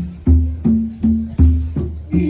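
Hand drums played in a steady rhythm of about three strokes a second, with a deep bass stroke roughly once a second under shorter, higher pitched tones.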